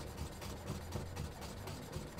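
Chef's knife rocking rapidly through thin carrot slices on a wooden cutting board, cutting julienne matchsticks: a quick, even run of faint taps and slicing crunches.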